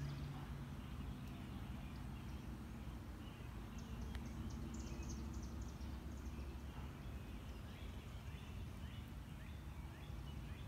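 Wild birds calling, with a quick run of short high chirps about four seconds in and a few fainter calls later, over a low steady rumble.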